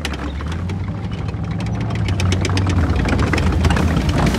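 Background music: a low droning bass with a steady ticking beat, growing steadily louder.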